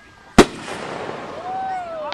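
Aerial firework shell bursting: one sharp, very loud bang a little under half a second in, followed by a rolling echo that fades slowly.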